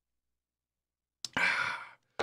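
A man's breathy sigh of an exhale just after a sip of coffee, starting about a second in with a small click from the lips and lasting about half a second; the first second is silent.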